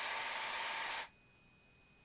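Steady hiss of the aircraft's headset intercom feed, the pilot's open mic passing cabin noise. About a second in it cuts off suddenly to near silence as the intercom squelch closes.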